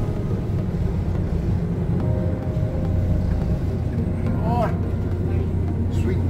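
A tour boat's engine running under way, a steady low drone heard inside the cabin.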